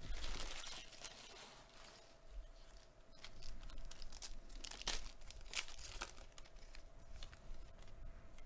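Foil trading-card pack wrapper crinkling as it is torn open in the first second, then the cards are handled and flicked through by hand with a few sharp clicks.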